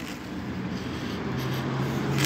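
Motor vehicle running nearby: a low, steady engine hum that grows slightly louder toward the end.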